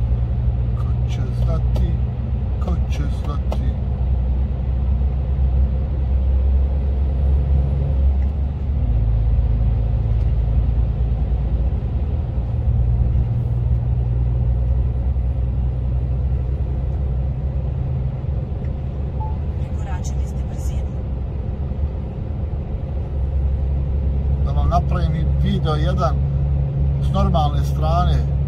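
Steady low engine and road drone heard inside a truck's cab while driving at motorway speed, changing in tone about nine seconds in.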